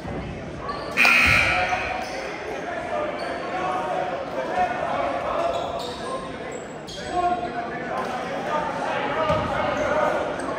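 Basketball bouncing on a hardwood gym floor amid echoing crowd chatter, with a sudden loud burst of noise about a second in that fades over about a second.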